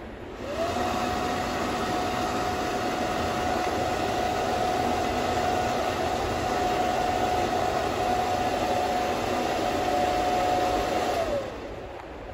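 Kratos KV 815 1500 W hand dryer triggered by its touchless infrared sensor. The motor spins up with a rising whine about half a second in, then runs with a steady whine over a rush of air. Near the end it winds down.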